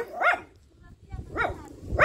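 A dog barking: two short barks about a second apart.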